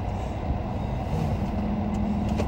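Steady low vehicle rumble heard from inside a car's cabin.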